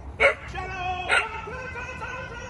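A dog giving two short barks about a second apart.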